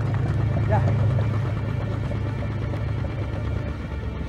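Boat engine running with a steady low hum, under a brief shouted line.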